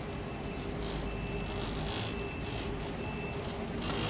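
Moving walkway's warning beeper near the end of the travellator: a short, high, steady beep repeating about once a second, over a low steady hum and concourse noise.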